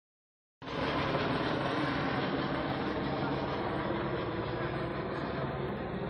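Helicopter flying low overhead: a loud, steady rotor and engine noise that starts about half a second in and eases slightly toward the end.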